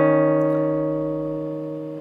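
Nylon-string classical guitar with a plucked chord ringing out and fading steadily. It is the D-sharp on the fourth string sounding with the C-sharp on the second string.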